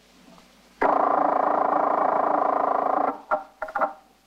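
A telephone bell ringing once for about two seconds, starting and stopping abruptly, with a few brief fainter sounds after it.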